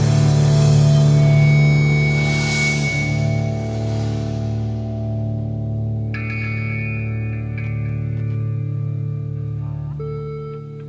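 Alternative rock music: a held, distorted electric guitar chord ringing on, its bright top fading over the first four seconds, with higher ringing notes coming in about six seconds in.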